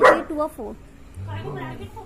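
A dog barks once, sharply and loudly, at the very start, followed by softer pitched vocal sounds.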